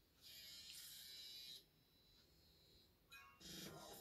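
Television sound at the break into adverts: mostly near silence, with a short, high, hissy music sting starting about a quarter of a second in and lasting over a second. The next advert's sound starts near the end.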